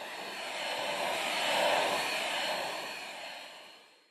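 A small handheld vacuum cleaner running with a steady rush and a faint high whine as it sucks loose hair from a cat's coat. It swells up and fades away again.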